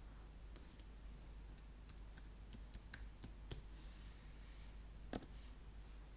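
Faint computer keyboard typing and mouse clicks: scattered, irregular sharp clicks, with a louder click about five seconds in.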